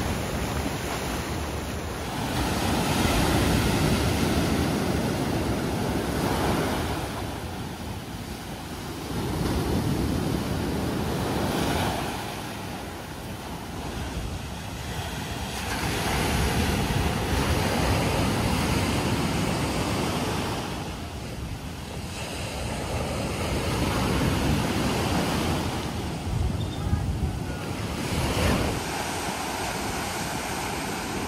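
Ocean surf breaking and washing over shoreline rocks, the rush of water rising and falling every several seconds as each wave comes in.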